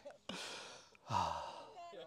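A man sighing: two breathy exhales, the second, just after a second in, louder and voiced.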